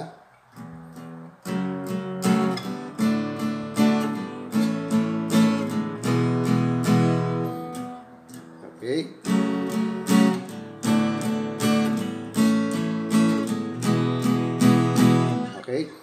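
Acoustic guitar strummed in plain downstrokes, three down strums on each chord of an F-sharp minor, D, A, E progression. The strumming pauses briefly about eight seconds in, then resumes.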